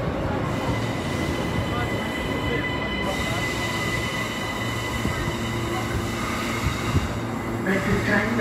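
Queensland Rail New Generation Rollingstock electric train passing close along a platform: steady rumble of wheels and running gear with a thin, steady high tone over it.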